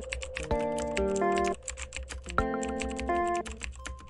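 Computer keyboard typing, a rapid run of keystroke clicks, over background music of sustained chords that come in twice.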